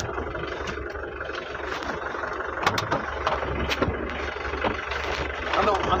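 Ambulance van's engine running and road noise heard from inside the cab while driving, with a few sharp clicks around the middle.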